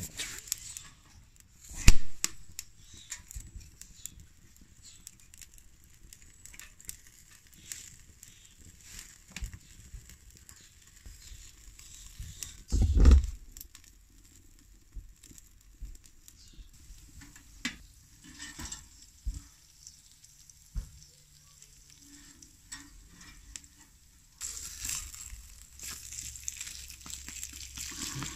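A wood fire crackles faintly in a small steel stove made from a helium tank, with scattered clicks and knocks as a pizza is slid onto the grate, and a louder thump about halfway through. Near the end, steady sizzling starts as the pizza fries in a pan.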